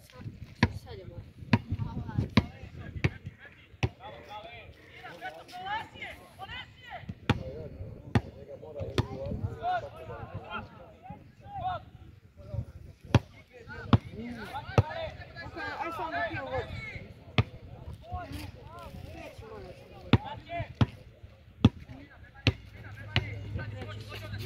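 A football being kicked on a grass pitch: sharp single thuds at irregular intervals, about one to two seconds apart, with players' distant calls and shouts between them.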